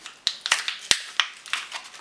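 Card-and-plastic blister pack of a 9V battery being peeled and torn open by hand: an irregular run of crackles and clicks, with one sharp snap about a second in.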